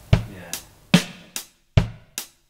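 A drum kit playing a sparse beat on its own: about five separate hits, deep kick drum strokes alternating with sharper snare or cymbal strokes, roughly two and a half a second, with the sound dying away between them.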